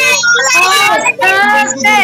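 A child singing, loud and melodic, the voice starting suddenly at full volume and holding drawn-out, wavering sung notes.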